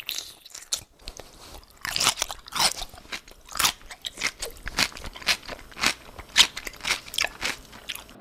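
A person biting and chewing crunchy food close to the microphone, with irregular crisp crunches about once or twice a second, recorded on a Sennheiser MKH 416 shotgun microphone.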